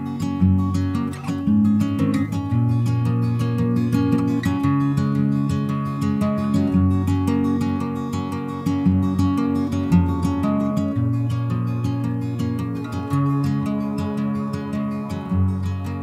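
Acoustic guitar playing the song's instrumental intro: a steady, even pattern of picked notes over ringing chords.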